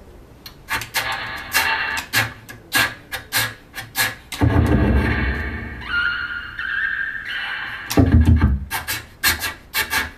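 Bassoon played in free improvisation with extended techniques: a scatter of sharp clicks and pops, low rough blasts, and a thin high note about six seconds in that steps up once and stops after about a second and a half.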